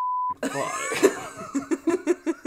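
A brief steady beep with an abrupt start and stop, a censor bleep dubbed over a word, followed by two people laughing.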